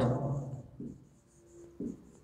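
Marker pen writing on a whiteboard: a few short, faint strokes, one with a brief squeak.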